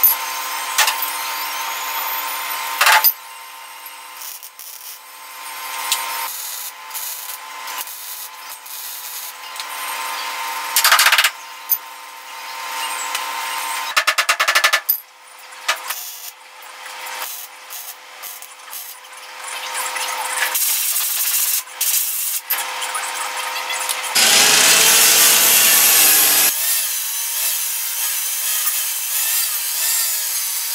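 MIG welder stitch-welding a sheet-steel cab corner patch panel in short crackling bursts, alternating with an angle grinder and flap disc grinding down the welds.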